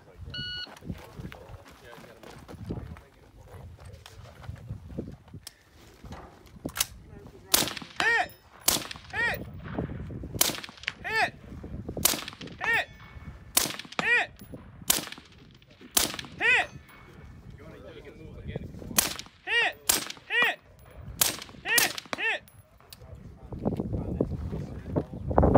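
A shot-timer beep, then a string of about a dozen rifle shots from a Quantified Performance LightFighter 16, roughly one every second or so. Most shots are answered about half a second later by the ring of a bullet hitting a steel target downrange.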